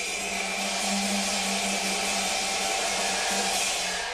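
Background music of sustained, held tones with a steady bright hiss above them.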